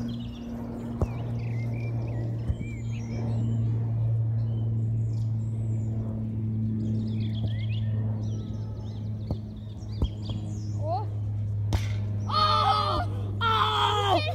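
Outdoor ambience: a steady low hum with scattered bird chirps and a few sharp knocks, and distant shouting voices near the end.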